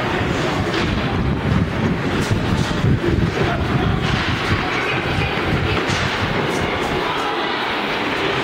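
Loud, steady rumbling noise of a handheld camera's microphone being carried at a run, with scattered sharp knocks of footfalls and handling.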